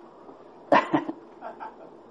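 A person laughing: two short, sharp bursts about three-quarters of a second in, then a couple of softer ones.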